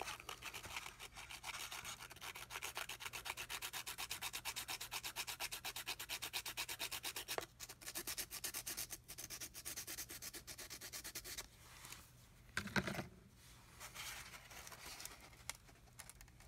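Soft pastel stick rubbed on coarse sandpaper in quick back-and-forth strokes, about five a second, grinding the pastel into powder. The rasping stops about three-quarters of the way through, followed by a single short knock.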